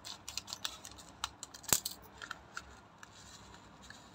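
Scissors snipping open a small plastic spice packet: a quick run of sharp clicks and crinkles, the loudest a little before halfway, then fainter rustles as the packet is handled.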